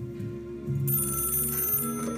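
Bright, rapidly pulsing ring of an old-fashioned telephone bell, about a second long and starting midway, over soft background music with held notes.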